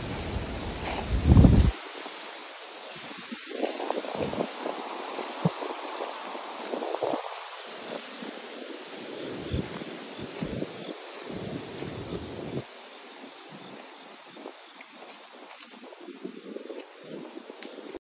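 Wind buffeting the phone's microphone in low gusts, the strongest about a second in, over a steady outdoor rush, with the rustle of someone walking through wet leaves and gravel.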